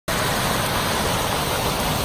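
Muddy floodwater rushing in a torrent down a narrow hillside lane and tumbling over rocks, a steady, even rushing noise.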